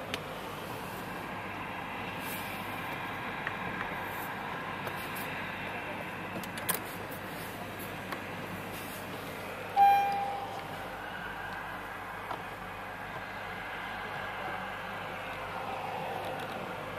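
A few light clicks of dashboard switch buttons being pressed in a 2016 Honda Pilot, and one short electronic beep from the car about ten seconds in, the loudest sound, over a steady background noise.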